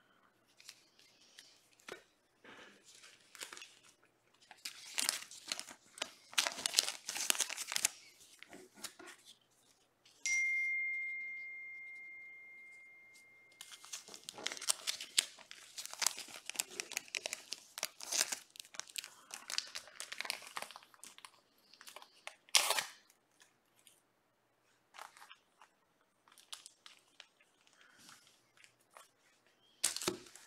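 Trading card foil packs being torn open and cards handled, with bursts of crinkling and tearing throughout. About ten seconds in, a single ding rings out and fades over a few seconds.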